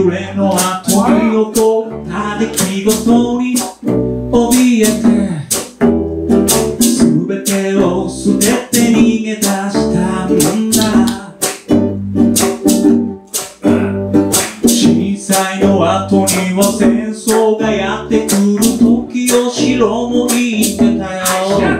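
Live acoustic band playing a song: strummed acoustic string instruments and a drum kit keeping a steady beat, with a man singing.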